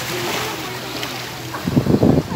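Open-air beach sound: a steady hiss of wind and sea with faint far-off voices, and a louder gust of wind buffeting the microphone near the end.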